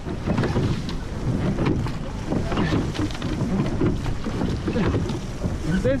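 Wind on the microphone over water rushing past the hull of a rowed surf boat moving at race pace.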